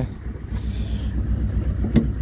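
An engine idling steadily, a low pulsing rumble.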